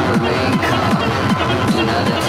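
Hard techno (schranz) DJ mix: a fast, steady kick drum, each beat dropping in pitch, under dense, gritty percussion and synth sounds.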